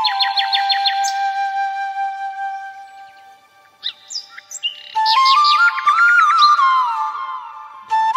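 Background music: a flute melody layered with birdsong chirps. A held flute note fades away over the first few seconds, a few bird chirps fill a short pause, and the flute melody comes back about five seconds in, with quick runs of chirps above it.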